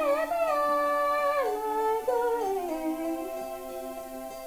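A woman singing a pop ballad line over sustained chords on a keyboard piano. Her voice rises into a long held note, then steps down and trails off, leaving the piano chord ringing more softly near the end.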